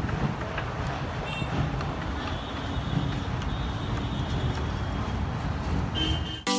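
City street traffic: a steady rumble of passing vehicles, with faint horn tones about one to three seconds in.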